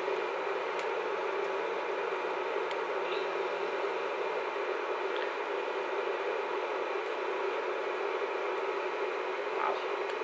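Steady whirring hum of a running Z Potter induction heating plate, its cooling fan running with faint steady tones in it. A few faint clicks come from a small metal makeup pan being handled.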